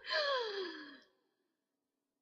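A woman's long voiced sigh, falling in pitch over about a second: a sigh of exasperated dismay.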